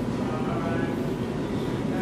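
Steady background noise of a busy indoor hallway, with faint voices in the distance.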